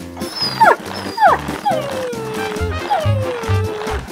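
A cartoon dog's voiced cries over bouncy background music: two short falling yelps, then two longer whines that slide down in pitch and trail off.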